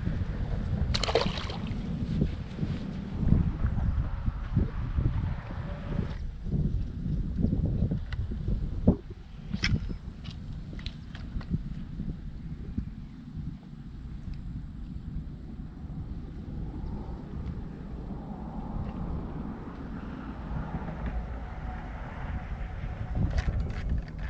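Wind rumbling on the microphone with handling knocks, easing after about nine seconds, with a short splash-like hiss about a second in and a few sharp clicks around ten seconds in.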